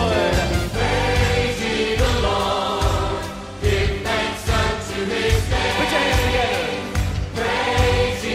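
A choir singing a live praise-and-worship song with band accompaniment and a steady beat.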